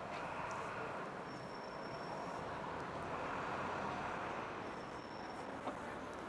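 Steady hum of city street traffic.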